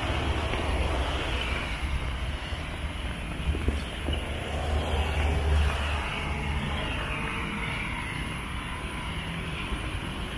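Steady road traffic noise from a wide multi-lane road, a low rumble with a wash of tyre noise, swelling a little about halfway through as a vehicle passes.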